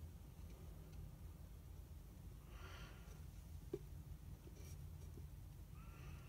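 Near silence over a steady low hum, with a faint brief rub about halfway through and a light click soon after as hands handle a small wooden box.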